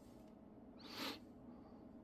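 Near silence: quiet room tone, with one faint, brief soft noise about a second in.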